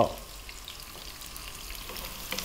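Onion chunks, garlic and ginger sizzling steadily in hot oil in a wok on high heat, with a wooden spatula stirring them.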